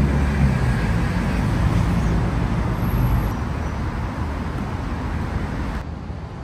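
Steady outdoor background noise with a low rumble, a little louder in the first few seconds and then easing slightly.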